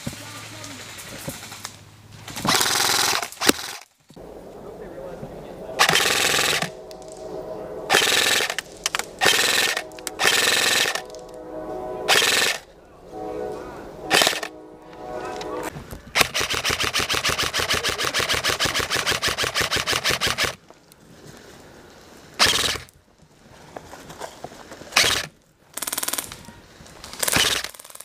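Airsoft rifles firing on full auto: a string of short bursts, and one long continuous burst of about four seconds a little past the middle.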